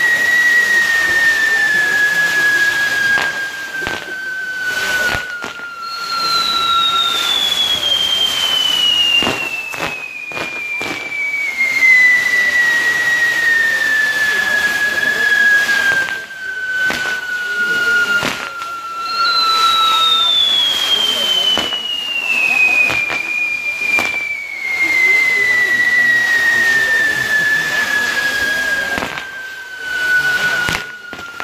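Castillo fireworks tower burning: high whistles, each gliding slowly down in pitch over many seconds. One is already sounding, a new one starts high about six seconds in and another about nineteen seconds in, over scattered crackling pops.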